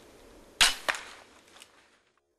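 Bow shot at a deer: a sharp crack at the release, then a second smack about a third of a second later as the arrow strikes, with a few faint knocks after.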